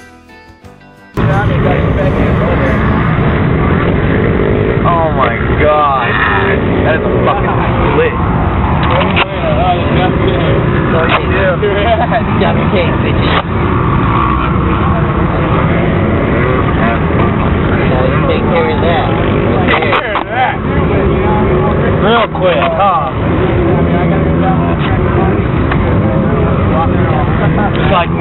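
Loud running engine noise with people's voices, cutting in suddenly about a second in.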